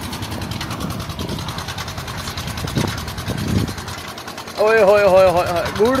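An engine running steadily in the background with a fast, even beat. A man starts speaking near the end.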